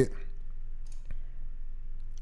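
A couple of faint computer mouse clicks about a second in, over a low steady hum.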